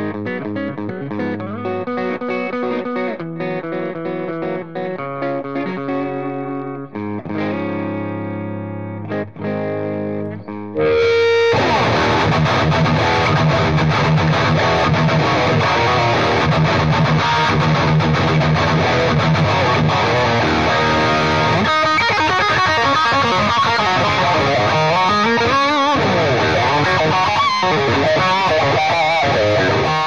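PRS Tremonti electric guitar played through a PRS MT15 tube amp head. For about the first eleven seconds it plays separate, cleaner picked notes and chords; then it switches suddenly to louder, heavily distorted high-gain riffing.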